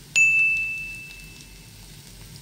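A single bright metallic ding, struck once just after the start and ringing out as it fades over about a second and a half.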